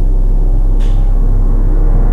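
Loud steady low electrical hum and hiss of a heavily boosted recording of a dark room, with a brief faint knock about a second in.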